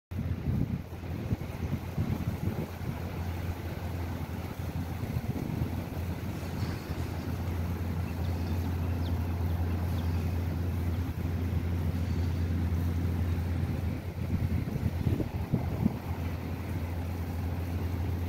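Wind buffeting the microphone in irregular gusts, heaviest at the start and again near the end, over a steady low hum.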